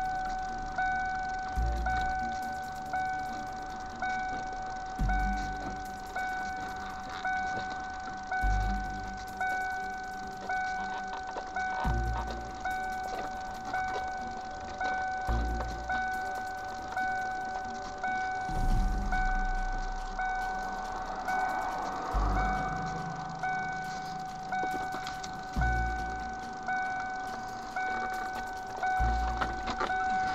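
A car's electronic warning chime dinging over and over, about once every 0.7 s, with a low thump every few seconds underneath.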